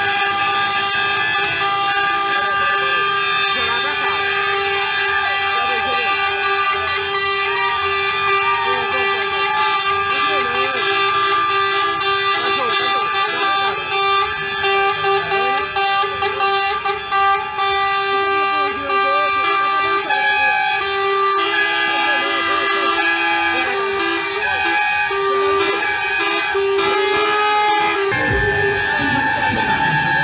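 Truck air horns sounding in a long, unbroken chorus of several held tones as lorries pass, with people shouting over them. The horn tones shift about two-thirds of the way through, and a deeper low rumble comes in near the end.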